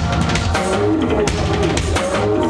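Loud live band music: an acoustic drum kit played hard, with bass drum and cymbal hits, under pitched electronic sounds that slide up and down.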